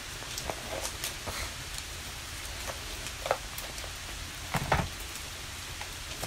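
An oracle card deck being shuffled by hand: scattered soft card taps and flicks, the loudest a short cluster about three-quarters of the way through, over a steady background hiss.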